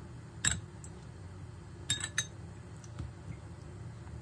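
A metal spoon clinks against a small glass bowl while scooping cornstarch: one clink about half a second in, then a quick cluster of three around two seconds in.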